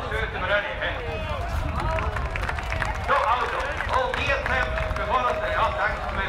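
Mostly speech: a man talking into a handheld microphone, with a steady low rumble underneath.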